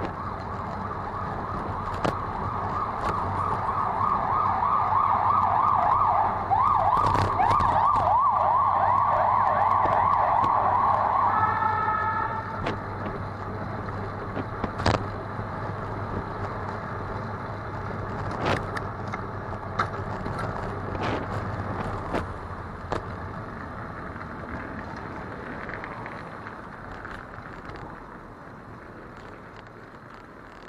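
Emergency vehicle siren sounding a rapid yelp, growing louder over the first several seconds, then cutting off about twelve seconds in with a brief steady tone. After that come street traffic and road noise with a few sharp clicks.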